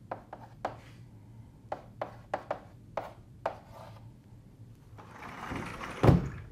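Chalk writing on a blackboard: a series of sharp taps and short scrapes as symbols are written, about nine strokes in the first three and a half seconds. A louder rustle builds near the end.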